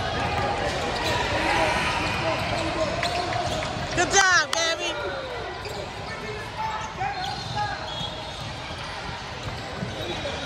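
Basketball game on a hardwood court: a ball dribbling and footfalls, with a loud burst of several sneaker squeaks about four seconds in, over voices of players and onlookers in the gym.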